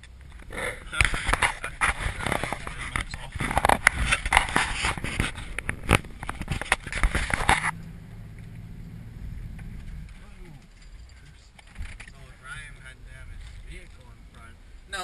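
A loud, rough scraping and crackling noise for about seven seconds that stops abruptly. It is followed by the steady low hum of a vehicle engine heard from inside the cab, with faint voices.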